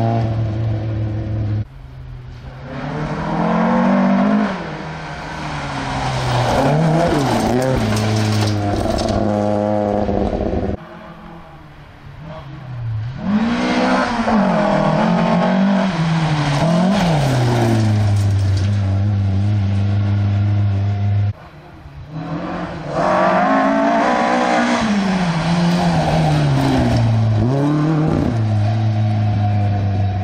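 Rally cars passing one after another on a gravel special stage, each engine revving hard, with the pitch climbing and dropping repeatedly through gear changes and lifts off the throttle in the corner. The sound switches abruptly between cars about 2, 11 and 21 seconds in; the later passes come from a green Volvo saloon and an orange Ford Escort.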